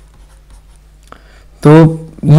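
Faint scratching and light ticking of a stylus writing on a tablet surface, with a small tap about a second in.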